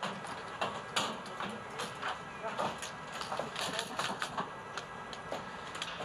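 Ambient sound at the top of a ski-jump inrun: a steady hiss broken by frequent, irregular small clicks and knocks, with faint voices in the background.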